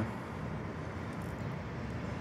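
Steady, distant hum of city street traffic, with no single vehicle standing out.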